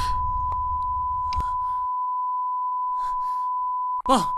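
Patient monitor's flatline alarm: one continuous high beep held at a steady pitch, the sign that the patient's heart has stopped. A low rumble sits under it and stops about two seconds in.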